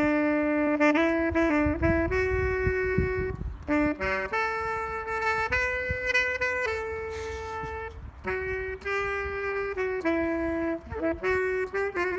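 Solo saxophone playing a slow melody of held notes mixed with quicker note runs, pausing briefly between phrases about four and eight seconds in.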